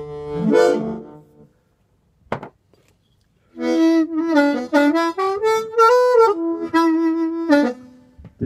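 Amplified harmonica, cupped with an Audix Fireball V microphone and played through a small Schertler amplifier with its warm, low tone setting engaged. A phrase fades out in the first second and a half; after a short click, a new phrase of held notes starts about 3.5 s in, rising and falling before it stops just before the end.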